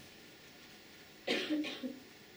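A person coughing: a short burst of quick coughs starting about a second and a quarter in.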